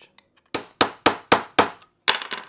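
Small hammer striking a steel punch held on a 3/64-inch rivet, five quick light taps about four a second. The rivet head rests on the steel top of a vise and is being set through a brass mudguard panel.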